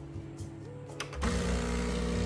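A home espresso machine with a built-in grinder starts up about a second in and runs with a steady mechanical buzz and low hum, under background music with sustained notes.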